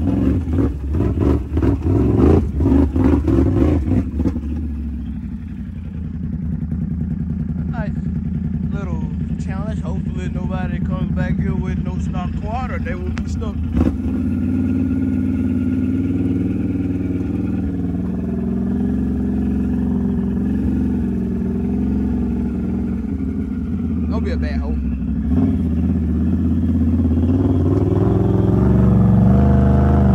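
A Can-Am ATV engine revving hard for the first few seconds, then running steadily at low speed on a trail. Its pitch climbs near the end as the quad approaches a mud hole.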